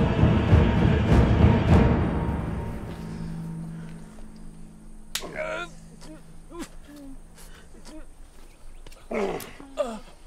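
Dramatic orchestral score with timpani, fading out over the first few seconds into a low held tone. Then a wounded old man groans in pain twice, about five seconds in and again near the end.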